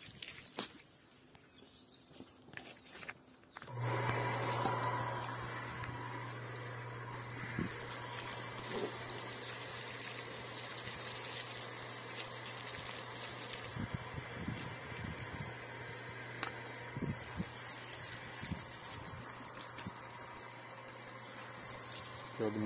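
Garden hose spraying water under pressure from a half-horsepower electric surface pump: a steady hiss with a low steady hum under it, starting suddenly about four seconds in after near quiet.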